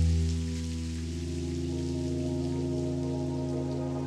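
Lofi hip hop music without a beat: a held, soft keyboard chord with a deep bass note that fades over the first second, over a steady layer of rain sound.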